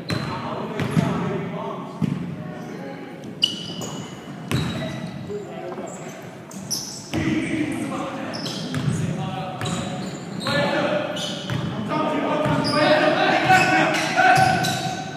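Basketball bouncing on a hardwood gym floor in a few separate bounces, echoing in a large gym, with players' indistinct voices calling out that grow louder near the end.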